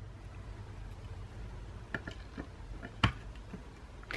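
Light plastic taps and clicks as a removable punch head is set into its slot on a We R Memory Keepers Planner Punch Board: a few faint taps about two seconds in, then one sharper click about three seconds in.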